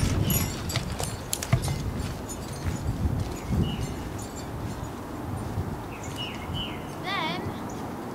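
Outdoor ambience with a low rumble of wind and handling on the microphone and a few sharp knocks in the first second or so. Near the end come a few short high bird chirps and one warbling, wavering call.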